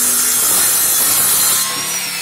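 Ryobi compact electric miter saw cutting through pallet wood: a loud, rough sawing noise over the high whine of the spinning blade. Near the end the cut finishes and the motor's whine starts to fall as the blade spins down.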